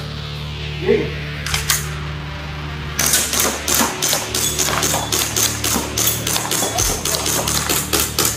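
TTI 085M electric airsoft gun firing a fast, uneven string of shots, roughly five to six a second, starting about three seconds in.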